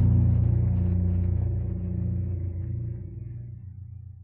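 The final chord of a rock song, guitar and bass, ringing out and fading away steadily, the low notes lasting longest.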